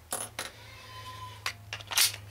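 A few short light clicks and taps of a Glock pistol magazine being picked up and handled.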